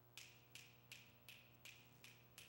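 Faint finger snaps, about three a second, keeping an even beat.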